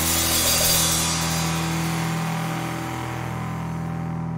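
A punk band's final chord held on distorted electric guitar, ringing out with cymbals washing under it as the song ends, the sound slowly fading.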